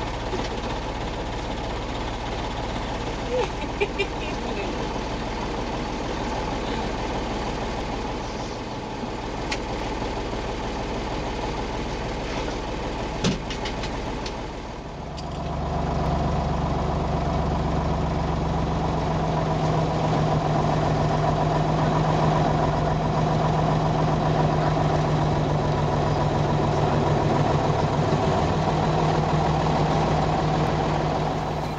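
A vehicle's engine idling, with a person laughing briefly about four seconds in. About halfway through, the sound switches to a louder, steadier engine hum with a low held tone.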